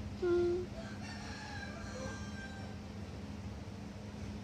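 A short hummed note near the start, then a rooster crowing faintly, one long call that slides in pitch, over a steady low electrical hum.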